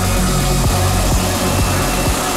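Bass-heavy electronic dance music from a DJ set: deep, sustained bass notes under repeated drum hits.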